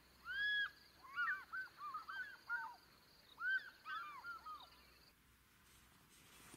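A bird calling: short rising-and-falling notes, one near the start and then two quick runs of several notes each, around one and three and a half seconds in.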